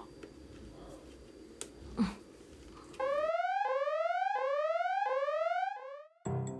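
Faint room tone with a few light clicks. About halfway through, an electronic alarm sound effect starts: a repeated rising whoop, about one and a half sweeps a second, running for about three seconds.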